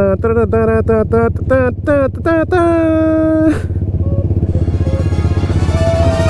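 Several small 125 cc motorcycle engines idle steadily at a start line, under a person's rapid laughter and then a long held call. About four seconds in, video-game-style music comes in.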